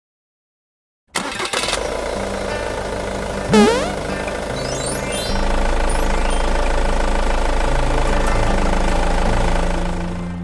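Cartoon sound effect of a camper van engine starting and running, over an intro jingle. It kicks in suddenly after about a second of silence, with a loud, quick rising glide about three and a half seconds in.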